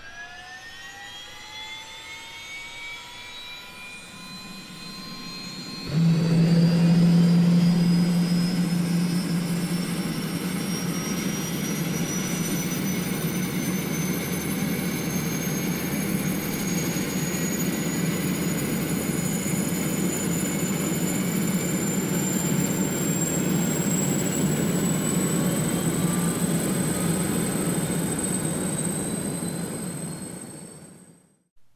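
Quadcopter drone motors spinning up with a rising whine, then about six seconds in the sound jumps louder into a steady buzzing hum with a high whine as the drone lifts off and flies.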